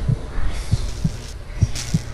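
Heartbeat sound effect on a horror-film soundtrack: low double thumps, lub-dub, about once a second, over a low rumble.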